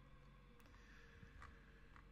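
Near silence: room tone with a faint steady hum and three faint clicks.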